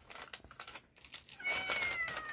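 Kitten meowing about one and a half seconds in, a thin, high, drawn-out cry that sags slightly in pitch. Under it is light crinkling of a plastic MRE pouch being handled.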